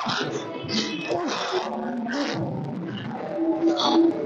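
A person's voice talking, with a held, drawn-out sound about three and a half seconds in.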